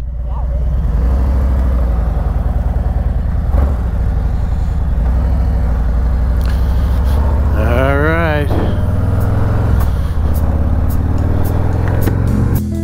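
Harley-Davidson touring motorcycle's V-twin engine running steadily as the bike moves off and rides at low speed. A brief wavering voice-like call comes about eight seconds in.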